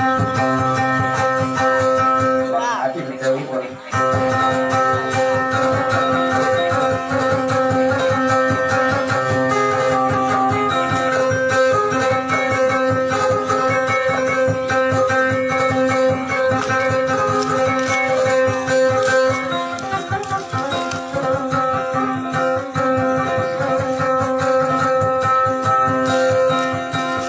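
Electric guitar playing fast, repeated plucked notes over a steady drone, an instrumental passage of Maranao dayunday music; the playing thins out briefly a few seconds in.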